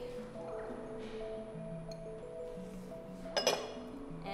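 Soft background music with sustained notes, and about three and a half seconds in a single sharp clink of a ceramic bowl.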